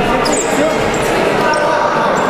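Several voices talking and calling out at once, echoing in a large sports hall, with a dull thud or two near the start.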